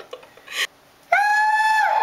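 A steady, high-pitched held tone with overtones starts a little past halfway and stays level in pitch. Its upper overtones drop away just before the end, after a short breathy burst and a moment of near silence.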